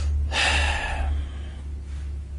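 A man's short, sharp intake of breath close to the microphone, lasting under a second, over a steady low electrical hum.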